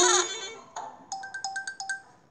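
Cartoon sound effects from a children's storybook app as its animals animate: a loud pitched call with gliding tones that fades out in the first moment, then a quick run of bright, chirpy electronic beeps, like a ringtone.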